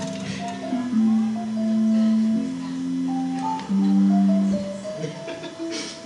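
Electric violin playing a slow line of long held low notes, each swelling and lasting about a second before the next.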